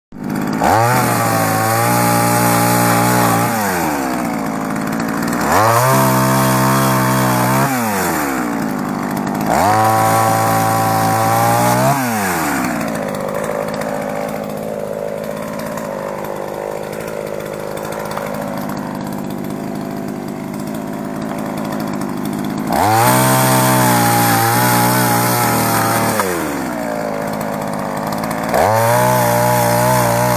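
Small two-stroke chainsaw revving to full throttle in five cuts of two to three seconds each through oil palm frond bases, dropping back to idle between them. Three cuts come close together, then it idles for about ten seconds before two more.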